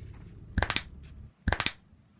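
Two quick bursts of sharp cracking, about a second apart, each a run of three or four cracks: a man cracking his knuckles and then his neck.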